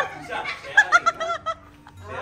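A person laughing in a few short, quick bursts near the middle, fading off toward the end.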